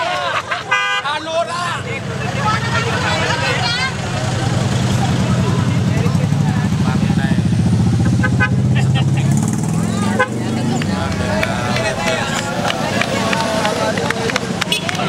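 Parade vehicles driving slowly past close by: an engine running low and steady, growing louder through the middle, with a short horn toot about a second in. Voices and shouts from the roadside crowd mix in.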